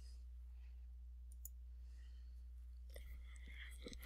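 Near-silent room tone under a steady low hum, with a few faint clicks of a computer mouse.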